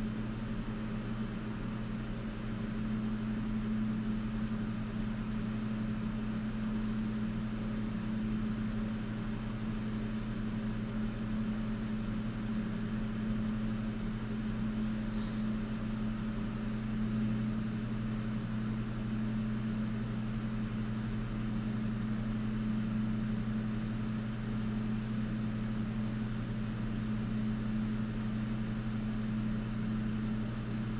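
Steady low electrical or motor hum with an even buzz, and one faint tick about halfway through.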